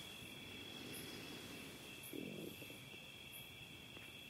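Quiet pause with faint room tone and a steady, high-pitched insect trill, like crickets. There is a soft, brief low sound about two seconds in.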